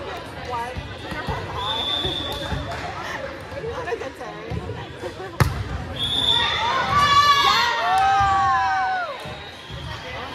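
Volleyball being struck once, a sharp smack about halfway through, over gym chatter. Two short shrill high tones, one early and one just after the hit, then players' voices calling and cheering loudly for about two seconds before dying down.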